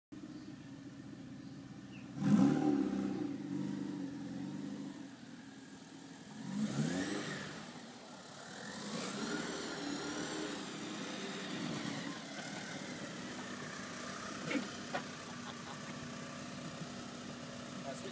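Porsche 968 Club Sport's 3.0-litre four-cylinder engine idling, revved sharply about two seconds in and again near seven seconds. It then runs under varying load as the car is driven on grass, and settles back to a steady idle with a couple of short clicks near the end.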